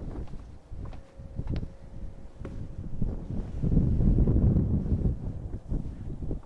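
Wind buffeting the microphone with a low rumble that swells loudest in the second half, with a few light knocks early on.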